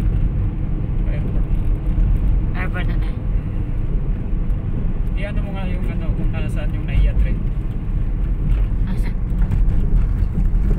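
Inside a moving car's cabin: the steady low rumble of tyres and engine on the road. Brief snatches of a voice come about three and five seconds in.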